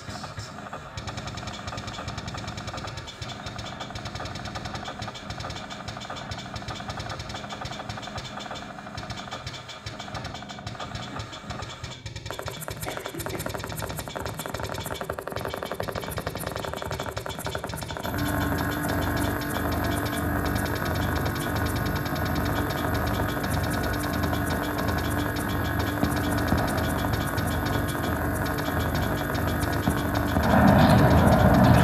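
Live experimental electronic music from home-built sound devices: a dense, grainy texture with steady tones, growing louder, and a fuller, louder layer of held tones coming in sharply about eighteen seconds in.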